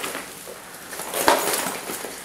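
A fabric backpack rustling as it is lifted and searched, with a short knock about a second in.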